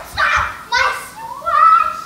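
Young children's voices: high-pitched shouts and squeals in quick succession during rough play, ending in a longer drawn-out cry.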